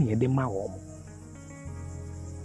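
A man's brief voiced utterance at the start, then a steady, high-pitched chorus of insects over a low, steady hum.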